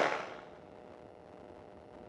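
Engine and wind noise of a GT450 flexwing microlight in flight, dying away within about half a second to near silence with only a faint steady hum left.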